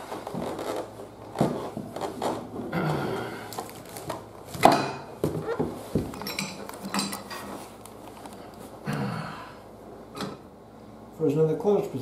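Wrenches clanking and knocking against a cast-iron radiator's brass valve fitting as the valve is wrenched loose; the fitting is seized by rust and paint. A series of sharp metallic clinks and knocks, the loudest a little before halfway.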